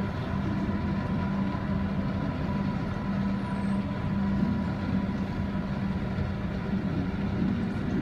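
A steady low mechanical hum and rumble with a held low tone, the constant ambient drone of a large indoor space.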